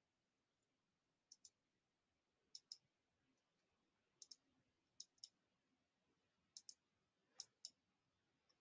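Faint clicks of a computer mouse button, in about six quick pairs spaced a second or so apart, over near silence.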